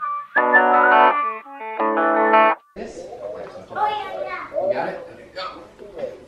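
Electric guitar music with effects that cuts off abruptly about two and a half seconds in. It is followed by quieter, indistinct voices in a room.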